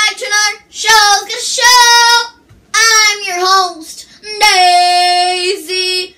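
A girl singing a few short unaccompanied phrases, ending on one long held note about four and a half seconds in.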